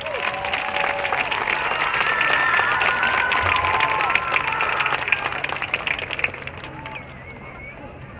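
Stadium crowd applauding and cheering, with shouts and whoops over dense clapping, dying down about seven seconds in.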